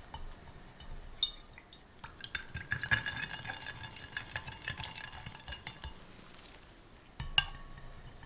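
A spatula stirring coloured jelly liquid in glass mugs, scraping and tapping against the glass, which rings faintly. There is one sharp clink against the glass near the end.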